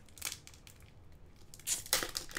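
A foil Pokémon card booster pack being torn open by hand. There is a faint rustle, then a short crinkling rip near the end.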